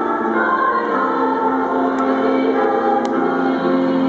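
A school song sung by a choir with accompaniment over a baseball stadium's public-address system, a slow melody of long held notes. At the end of a high-school game this is the winning school's song played in its honour.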